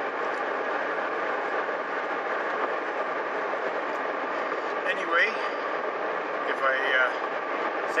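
Steady road and engine noise inside the cabin of a moving car. A man's voice gives two brief faint sounds about five and seven seconds in.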